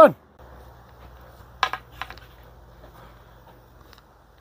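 Faint steady background hum of a room, with two short knocks about a second and a half and two seconds in.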